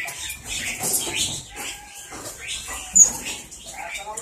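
Many caged songbirds chirping and calling over one another in an aviary, with one sharp, high chirp about three seconds in.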